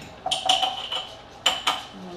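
A few sharp clinks and knocks of kitchenware: one clink with a brief high ring early on, then two more knocks close together about a second and a half in.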